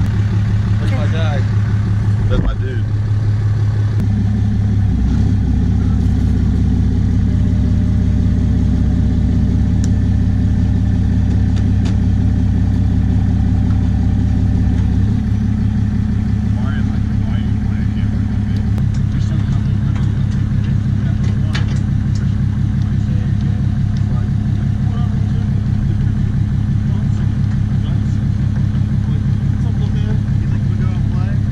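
Ram heavy-duty pickup's diesel engine idling steadily, with a slight change in its low tone about 15 seconds in.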